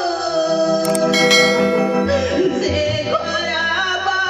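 A performer singing a long, held melodic line with musical accompaniment, steady low notes sounding underneath. A brief bright metallic clash comes about a second in.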